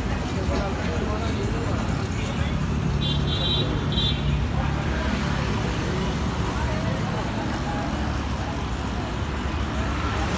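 Night street ambience: steady traffic and engine rumble with background talk from people nearby. Two short high beeps sound about three and four seconds in.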